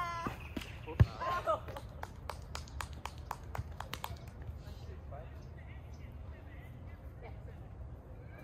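A volleyball struck by a player's hands or arms with one sharp smack about a second in, followed by a short shout. A quick series of light taps then runs on for a couple of seconds before the sound fades to faint outdoor background.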